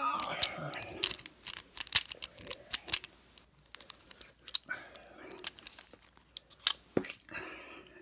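Steel lock pick clicking and scraping against the pins in the brass plug of a Chateau C970 stainless steel discus padlock as it is worked back and forth under light tension. The clicks come thick at first and sparser later.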